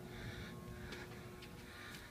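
Quiet road-tunnel ambience with no traffic passing: a faint steady hum and a few soft footsteps on the concrete walkway, about half a second apart.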